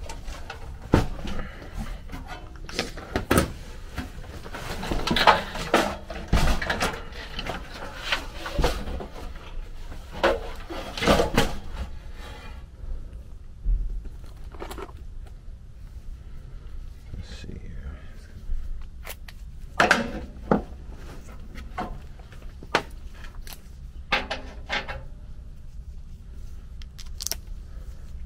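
Irregular metallic clanks, knocks and rattles of a sheet-metal blower housing, cabinet panels and hand tools being handled, coming in clusters with short lulls between them.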